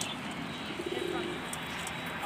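Domestic pigeon cooing: one low, throbbing coo about a second in, lasting about half a second.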